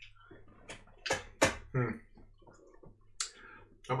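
Two sharp clicks a little after a second in, a short murmured "hmm", and a brief hiss near the end.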